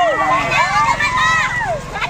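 A roadside crowd of children shouting and cheering, many high voices overlapping, while a motorcycle and then a pickup truck drive past with a low engine hum that comes in shortly after the start.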